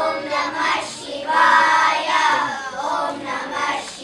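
Group of children singing a song together into a microphone, in sung phrases with a short break about a second in.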